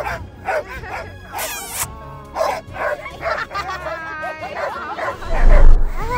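Harnessed sled dogs barking and yipping over and over, the excited calls of a team waiting to run. A loud low rumble comes near the end.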